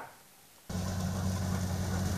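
Near silence for a moment, then a Kubota combine harvester's diesel engine starts sounding abruptly and runs at a steady, even hum.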